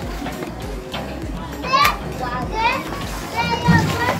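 Children's voices calling out in play, high-pitched and bending, in three short bursts through the second half.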